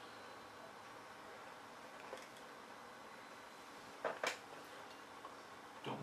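Faint steady room hiss with a small click about two seconds in and two short, sharper clicks about four seconds in: handling clicks as an AMD processor is fitted into its motherboard socket.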